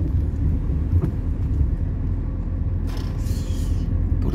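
Steady low rumble of a car's engine and road noise heard from inside the cabin while driving, with a brief hiss about three seconds in.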